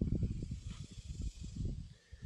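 Irregular low rumbling buffets of wind on the microphone, over a faint steady high hiss.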